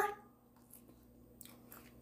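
Faint chewing of a bite of pork chop, a few soft mouth sounds in near silence.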